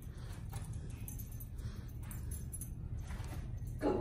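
A small dog moving about on carpet during a scent search, heard as a few faint soft clicks and rustles over a steady low room hum.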